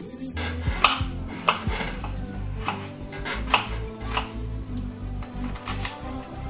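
Kitchen knife chopping an onion on a wooden cutting board: irregular sharp cuts, roughly one or two a second, over background music.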